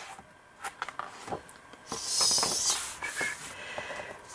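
Pages of a large book being flipped by hand: a few light taps and paper handling, then a loud papery swish about two seconds in as a page turns over.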